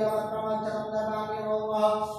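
Hindu mantra chanting in Sanskrit, the voice holding one long, steady note; a new phrase begins just after.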